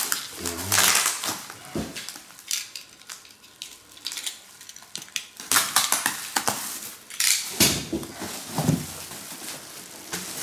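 Plastic bubble wrap rustling and crinkling as it is pulled and handled around a packed drum shell, in several irregular bursts with short quieter gaps between them.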